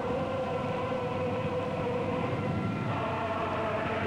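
Soundtrack music of a choir holding long sustained chords, the chord moving up to a higher note about three seconds in.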